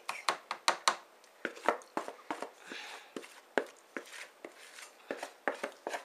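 A spatula knocking and scraping against a disposable aluminium foil pan and a mixing bowl as cake batter is spread and poured: an irregular run of light clicks and taps, about two or three a second.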